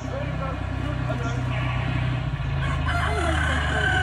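A rooster crowing, one long drawn-out call in the second half, over a low steady rumble.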